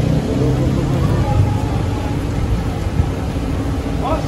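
Steady low rumble of a vehicle engine idling at the curb, with faint voices over it.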